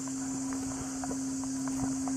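A steady low hum with an even high insect drone above it and faint scattered footsteps.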